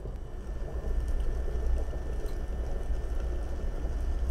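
A rainy fall ambience soundscape playing: a steady, even rain-like noise over a deep low rumble.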